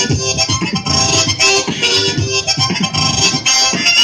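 Harmonica played together with beatboxing into a handheld microphone and out through a portable amplifier speaker: held harmonica notes over a continuous beat of vocal percussion.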